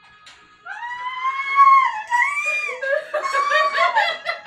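A loud, high-pitched human scream, held for over a second starting about half a second in, then a second shorter shriek, breaking into laughter near the end.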